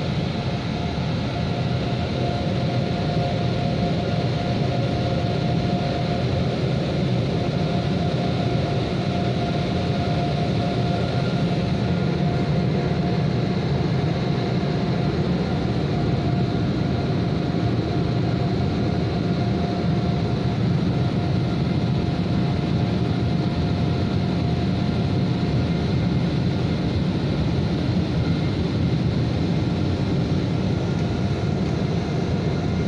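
Mark VII Aquajet XT touchless car wash gantry running steadily as it passes the car: a constant rushing noise with a steady whine over it, heard from inside the car.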